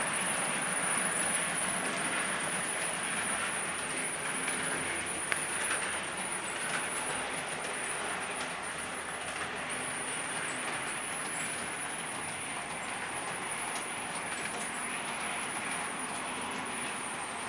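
Model electric train running on the layout's track: a steady rolling and motor noise, loudest at the start and easing off a little as it moves away. A thin high whine runs under it throughout.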